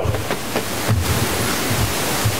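A loud, steady hiss of noise that starts suddenly, spread evenly from low to high pitch, with faint irregular low thuds underneath.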